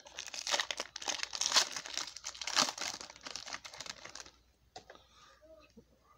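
Plastic foil wrapper of a trading-card pack crinkling as it is opened by hand, for about four seconds. Then only faint handling of the cards.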